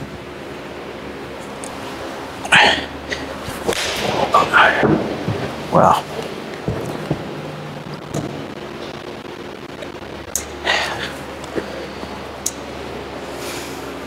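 A golf iron swung through and striking a ball off a hitting mat about two and a half seconds in, followed by brief voice sounds. A few lighter knocks and a click come later.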